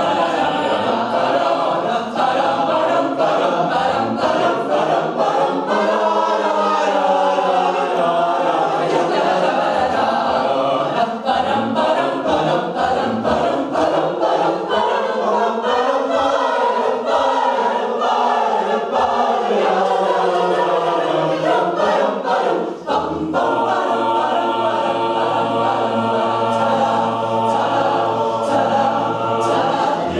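Mixed-voice a cappella group singing in close harmony without instruments. About three-quarters of the way through the voices break off for a moment, then hold sustained chords over a steady low bass note.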